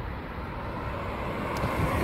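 Street traffic noise: a steady hum of vehicles on a nearby road that grows slowly louder.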